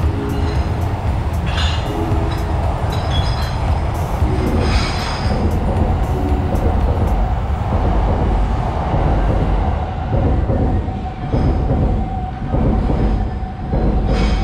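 A train running over the elevated railway viaduct overhead: a heavy, continuous low rumble with short, high wheel squeals in the first half. A steady whine runs from about halfway on.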